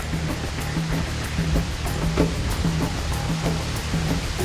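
Background music with a steady beat over a low bass line.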